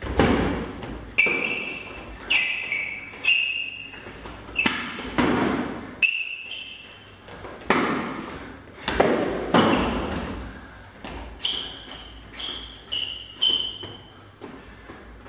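Training sabres clashing blade on blade in irregular exchanges, about a dozen sharp clacks, many with a short ringing tone. Several hits land with a heavier thud.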